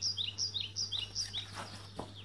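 A small bird chirping: a quick run of short, falling chirps alternating between a higher and a lower note, fading out about a second and a half in.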